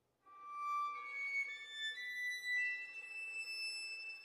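Solo violin starts playing about a third of a second in: long, high, sustained bowed notes, each held for half a second to a second and a half before stepping to a new pitch.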